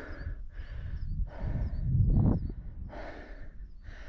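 A runner's heavy breathing: a run of quick, hard breaths in and out, with one heavier, deeper breath about two seconds in. He is out of breath from running an ultramarathon over hilly moorland.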